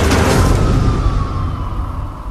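Trailer sound design: a heavy, deep boom with a long rumbling tail that dies away over about a second and a half, under a single high tone sliding slowly downward.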